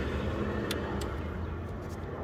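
Steady low hum of a running engine, slowly fading, with two light clicks about two-thirds of a second and one second in.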